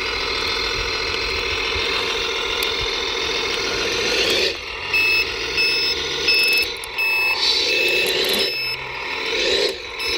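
RC model tipper truck's motor and drivetrain running steadily, then from about halfway in the model's sound module gives reversing beeps, roughly one every two-thirds of a second, while the motor revs up and down.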